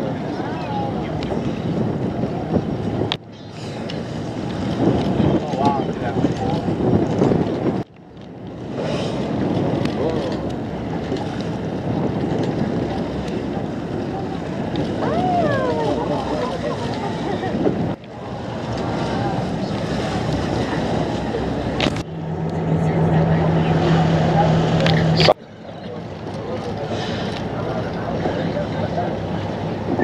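Wind buffeting the microphone and sea water sloshing aboard a whale-watching boat, with faint people's voices in the background. The sound jumps abruptly several times at edits, and in one stretch a steady low engine-like hum joins in.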